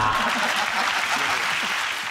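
Studio audience applauding, the applause beginning to tail off near the end.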